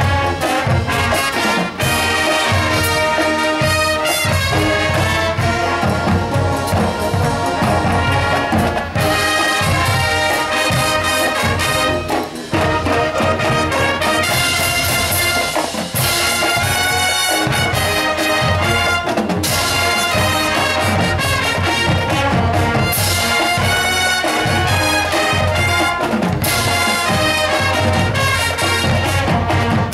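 High school marching band playing: a full brass section over a drumline, loud and continuous, with a couple of brief breaks in the sound partway through.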